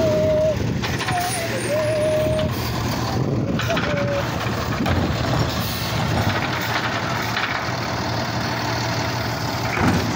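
Automated side-loading garbage truck running close by, its diesel engine giving a steady low hum as the grabber arm reaches out to a trash cart. A thin wavering whine comes and goes over the first few seconds.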